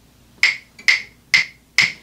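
Two wooden rhythm sticks struck together four times, evenly about half a second apart, counting in the song.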